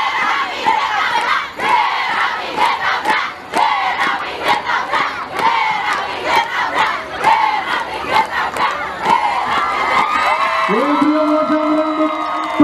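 A group of women shouting a rhythmic yel-yel cheer chant into microphones, with sharp percussive hits in time with it and a crowd behind. Near the end the chant ends in one long held shout.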